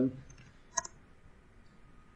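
Computer keyboard keystrokes typing a short command. A quick cluster of two or three sharp clicks comes about three-quarters of a second in, with a few faint keystrokes around it.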